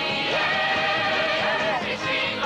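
Song by an Israeli army entertainment troupe: group music with many held notes, a sliding upward pitch near the start and wavering tones later on.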